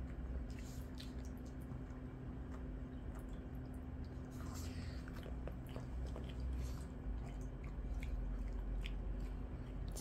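Shih Tzus chewing raw bell pepper strips, with faint scattered crunches. A low steady hum runs underneath.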